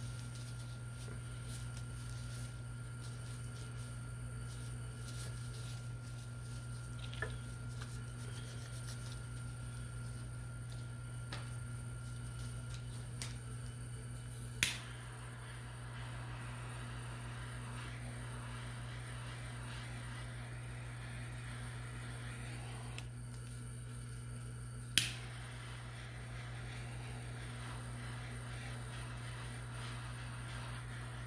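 Steady low hum of an electric tumbler turner's motor slowly spinning a resin-coated tumbler, with two sharp clicks, one about halfway through and another about ten seconds later.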